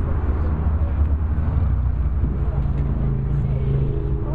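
A car engine running at idle: a steady low hum that grows a little fuller in the second half, with people talking in the background.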